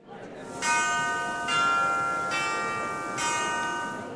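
Short bell-chime jingle: a soft swell, then four ringing bell-like notes a little under a second apart, the last one fading away.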